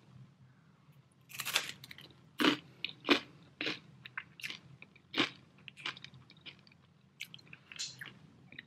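Crunching bites and chewing of a buckwheat crispbread topped with peanut butter, salted caramel and dark chocolate with peanuts. The crunches start about a second in and come irregularly, a few of them sharp and louder.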